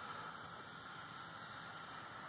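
Insect chorus, a steady high-pitched trill that goes on without a break.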